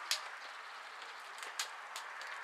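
Faint, steady background hiss of outdoor room tone, with a few soft clicks, one just after the start, one about a second and a half in and one near the end.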